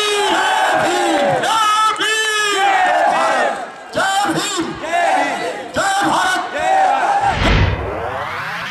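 Rally slogans shouted by men into a microphone, loud and in short repeated phrases of about a second each, with a crowd joining in. A low boom comes near the end.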